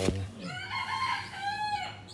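A rooster crowing once: a single call of about a second and a half, starting about half a second in and dropping in pitch near its end. A short sharp knock sounds at the very start.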